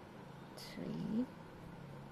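A short animal call about a second in, rising in pitch, just after a brief noisy rustle.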